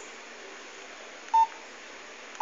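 A single short electronic beep about one and a half seconds in, over a faint steady hiss: a mobile phone keypad tone as a button is pressed.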